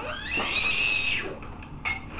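A toddler's high-pitched squeal. It rises quickly, is held for about a second, then breaks off.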